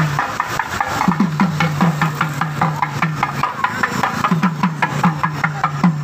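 Thavil (South Indian barrel drum) played in a fast, steady rhythm: deep ringing strokes on one head mixed with sharp cracking strokes on the other.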